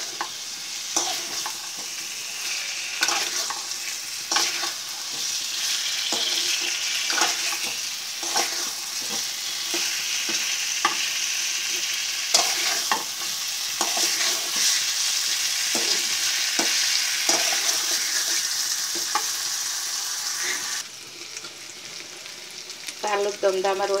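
Small whole potatoes sizzling in hot oil and spice paste in an aluminium pan, with a spatula scraping and stirring them about once a second. The sizzle drops away near the end.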